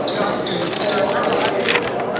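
A basketball bouncing on a hardwood gym floor, a series of sharp knocks, with voices carrying in the hall.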